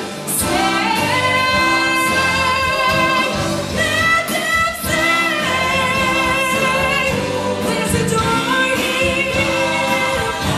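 Live stage performance: a woman sings lead into a microphone, backed by a group of harmony singers and a live band with drums and bass guitar.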